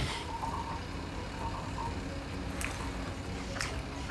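A person chewing a mouthful of food: a few faint, soft clicks over quiet room noise.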